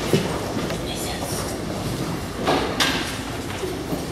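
A steady low rumble of room noise with a few short rustling hisses, the loudest about two and a half seconds in.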